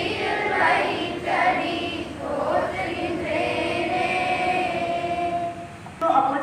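A group of schoolchildren singing a Sanskrit prayer together into microphones, in unison, with long drawn-out notes. The last note is held for a few seconds and breaks off just before the end.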